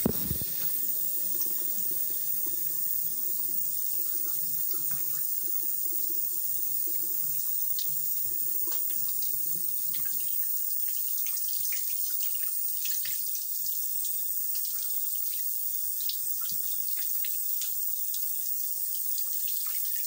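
Tap water running steadily from a bathroom faucet into the sink, with small irregular splashes and drips.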